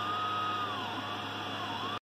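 3D printer running a print with flexible TPU filament: a steady fan hum under a stepper-motor whine that glides up and down in pitch as the print head moves.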